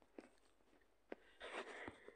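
Near silence with two faint short clicks and a brief faint rustle near the end.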